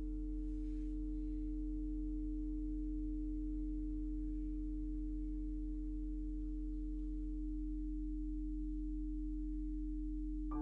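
Steady electronic sine tones held without fading: a low pure tone with a fainter higher one above it that drops out about seven and a half seconds in, over a deep steady hum.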